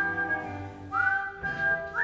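Stage-musical band accompaniment for a dance number: a high wind note slides up and holds, about once a second, over sustained chords.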